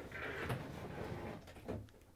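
A built-in dishwasher being slid out of its cabinet opening, its metal frame scraping and rattling over the floor, with a knock about half a second in and another near the end.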